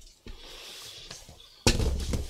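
Faint room sound, then near the end a sudden low thump and rumble of handling noise as a camera is being set on its mount.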